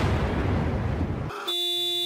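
A noisy cartoon explosion effect, heavy in the bass, cuts off after about a second and a quarter. About a second and a half in, a bagpipe starts a steady held note.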